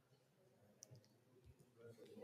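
Near silence: quiet room tone broken by a few faint short clicks, about a second in and again around a second and a half.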